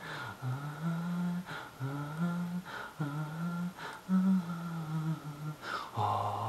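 A man humming a slow wordless melody unaccompanied, in short phrases of about a second each that step between a few low notes, with quick breaths between phrases.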